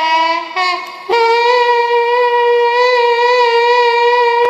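Nadaswaram, the South Indian double-reed pipe, playing a learner's alap in raga Madhyamavati. It plays a couple of short, wavering lower notes, then from about a second in holds one long, steady higher note.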